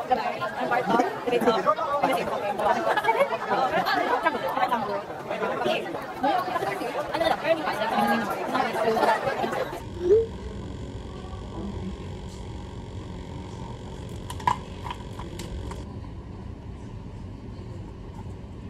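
Young women chatting for the first ten seconds or so. Then it cuts to a quiet indoor room tone with a steady low hum and a few light clicks.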